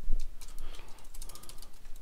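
Typing on a computer keyboard: a run of quick key clicks, with one heavier key thump right at the start.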